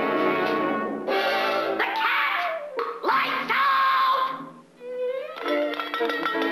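Orchestral cartoon score with brass, playing a few loud held chords broken by short pauses, then quick repeated notes near the end.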